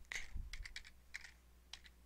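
Computer keyboard typing: a quick, uneven run of keystrokes.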